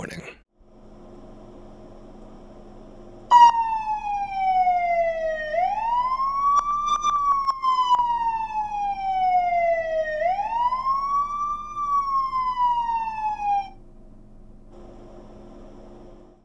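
Police siren wailing: it starts suddenly about three seconds in, its pitch sliding slowly down and then sweeping quickly back up, twice, before it cuts off near the end. A faint steady hum runs underneath before and after it.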